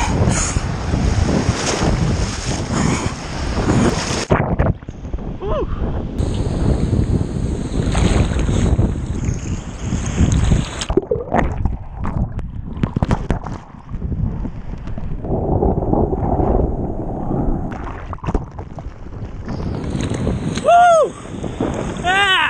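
Sea water splashing and churning around an action camera as a man dunks his upper body into cold surf, with wind buffeting the microphone; the sound turns dull and muffled about four seconds in and again from about halfway. A short high cry comes near the end.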